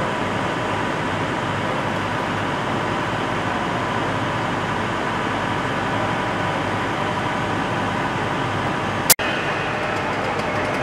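Steady mechanical drone of engines running, with faint steady whining tones, and a single sharp click about nine seconds in.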